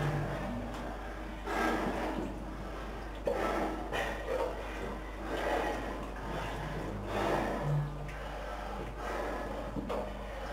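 A person breathing heavily, one breath about every two seconds, over a steady low hum.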